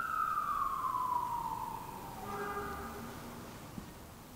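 A siren: one long tone, held high and then falling smoothly in pitch over the first two seconds or so, growing fainter through the rest.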